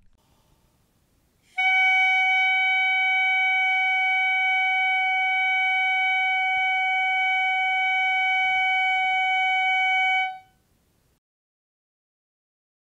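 Clarinet mouthpiece and barrel blown on their own, holding one steady tone at about concert F-sharp for roughly nine seconds, started by breath alone rather than the tongue. The tone begins about a second and a half in and stops cleanly near the ten-second mark.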